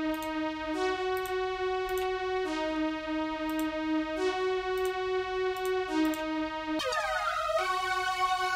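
Synth1 software synthesizer playing one held note through the computer's output, its tone stepping between two pitches every second or so. About seven seconds in there is a falling pitch sweep as a new preset loads, and after it the tone is brighter.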